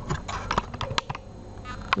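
Handling noise: a scattering of light clicks and taps, about six or seven in two seconds, as the camera or the mannequin is shifted.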